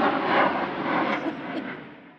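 An airplane passing overhead: steady engine noise that fades away over the two seconds.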